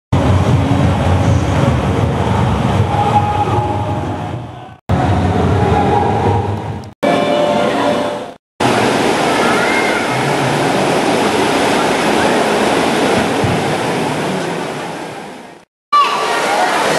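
Shallow stream water rushing steadily over stones in a stone-lined channel. The sound drops out briefly three times.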